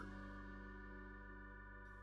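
Faint background music: a held keyboard chord that sounds like an organ, steady and fading slightly.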